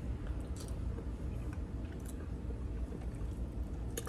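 Faint chewing of a mouthful of soft vegan macaroni and cheese: a few small wet mouth clicks over a steady low hum.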